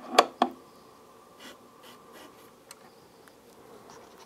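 Two sharp clicks in quick succession right at the start, from a finger working a control on a Technics SL-1200MK2 turntable. A faint steady hum with a few scattered light ticks follows as the platter spins.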